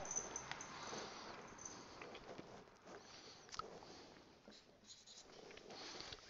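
Faint marker strokes on a white board as a tick mark and the number 3 are written, with a few small scratchy sounds and soft clicks.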